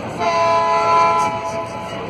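A horn gives one steady blast of about a second and a half, sounding several pitches at once like a chord.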